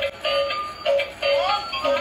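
Battery-powered light-up toy car playing its electronic tune: short repeated beeps, about three a second, with a few sliding tones in between.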